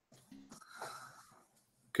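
Faint breath noise in a video-call microphone, lasting about a second, with a short faint voiced sound at its start.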